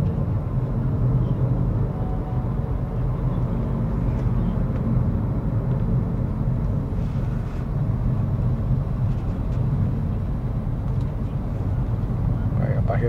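Steady low rumble of road and engine noise inside a Honda Civic's cabin while it drives along a highway.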